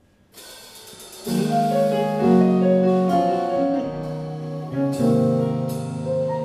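A live jazz band starts a song: a quiet entry about half a second in, then keyboard chords, electric bass and drums come in together about a second later with sustained chords.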